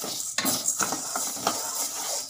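A perforated steel ladle stirring and scraping urad dal around a stainless steel kadai as it roasts, the lentils rattling against the metal in repeated strokes a few times a second, over a steady hiss.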